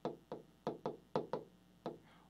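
Stylus tip knocking on the glass of a large touchscreen as letters are written by hand: about seven short, sharp taps at an uneven pace.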